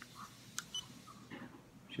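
Xiaomi Yi action camera's power button pressed through a clear plastic waterproof case: one sharp click about half a second in, then a short high beep as the camera starts up. Faint handling noise from the case in the hand.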